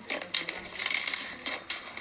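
Soft slime being kneaded and squeezed by hand, giving a dense run of crackling clicks and pops.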